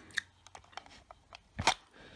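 Sparse, faint clicks of a laptop keyboard and touchpad, with one louder click near the end.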